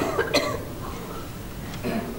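A person coughing briefly, a short sharp burst shortly after the start.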